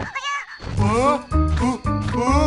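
A cartoon character's wavering, squeaky vocal sound, then background music with a bass line coming in about half a second in, with more bending vocal sounds over it.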